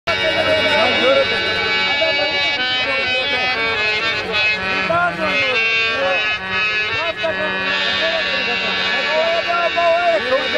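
Live folk music: a reedy harmonium holds sustained chords over a low drone, and a voice sings a wavering, gliding melody above it.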